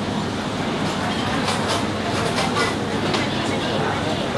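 Steady restaurant background noise with faint distant voices, and a few light clinks of cutlery against a plate.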